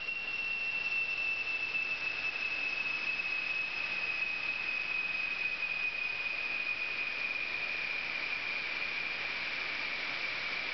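INERGEN inert-gas fire suppression system discharging into the enclosure: a steady rush of gas with a high whistle that drifts slowly lower in pitch.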